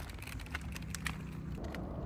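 Wheels of a loaded handcart rolling on a paved road: a steady low rumble with scattered light clicks and rattles. The sound changes shortly before the end.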